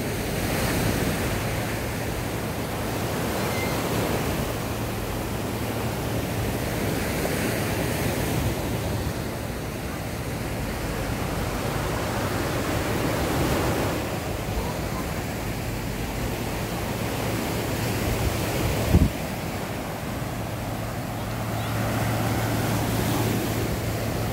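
Surf breaking and washing up on a sandy beach, swelling and easing every few seconds, with wind across the microphone. A single sharp thump about three-quarters of the way through.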